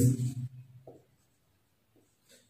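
A man's spoken word trailing off, then a quiet pause with only faint sounds of a marker writing on a whiteboard.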